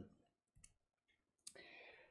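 Near silence in a pause between sentences: a few faint clicks a little over half a second in, then another click about one and a half seconds in, followed by a short faint hiss.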